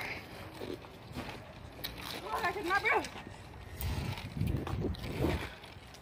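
Children's voices calling and shouting some way off during outdoor play, with one clear rising-and-falling shout about two to three seconds in, plus a few faint clicks.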